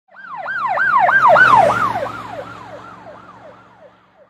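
Emergency vehicle siren in a fast yelp, its pitch sweeping up and down about three to four times a second over a low steady hum. It swells up over the first second and a half, then fades away.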